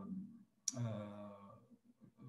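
A man's drawn-out hesitation sounds ("uh") fading out, with a sharp click about two-thirds of a second in, right where the second "uh" begins.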